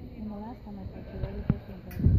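A brief stretch of indistinct speech, then a single sharp knock about halfway through.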